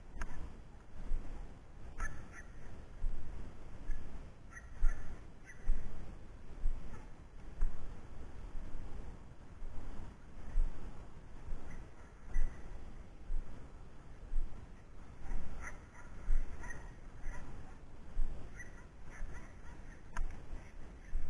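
Footsteps swishing through tall dry grass in a steady walking rhythm, about one step a second, with wind rumbling on the microphone. A few short bird calls come in about two seconds in, around five seconds, and several more near the end.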